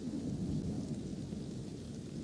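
Low, steady rumble of thunder with rain, part of a film's storm ambience.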